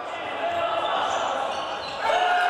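Live court sound of a basketball game in a large indoor arena: players' and bench voices calling out over a steady, echoing hall murmur.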